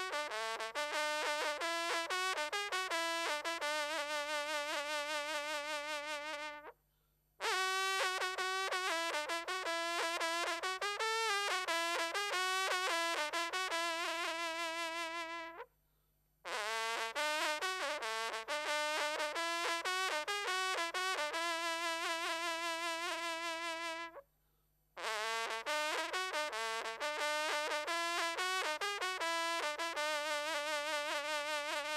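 Solo French hunting horn (trompe de chasse) playing a fanfare in four phrases of about eight seconds each, separated by brief breath pauses. Each phrase opens with quick runs of notes, and the held notes have a strongly wavering, shaken tone.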